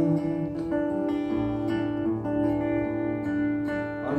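Acoustic guitar strummed softly, its chords ringing on through a short instrumental gap in a folk song.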